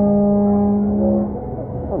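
A loud waterpark signal horn holding a steady low note with higher tones over it, cutting off about one and a half seconds in. It is taken for an announcement for one of the pools, such as the wave pool starting.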